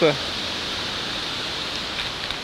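Steady rushing of a nearby mountain stream, an even hiss of running water.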